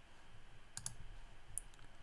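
Faint clicks of a computer mouse: two quick clicks just under a second in, then a lighter tick near the end.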